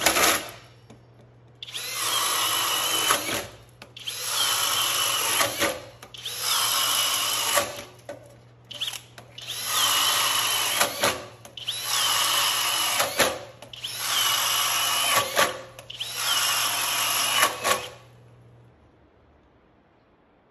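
FLEX 24V brushless cordless drill boring through wood with a 1 1/2-inch spade bit, in about seven runs of one and a half to two seconds each, with short pauses between holes. Each run opens with a whine that drops in pitch as the bit bites into the wood. It stops shortly before the end.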